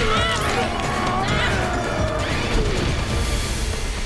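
Fight-scene sound track: wordless yells and battle cries that rise and fall in pitch, three times, over loud dramatic music.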